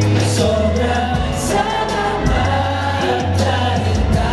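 A male pop group singing together in harmony over a backing track with bass and cymbals, played loud through a live sound system.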